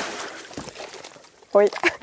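Pool water splashing and washing as an inflatable stand-up paddle board is slid into it, the wash dying away over about a second.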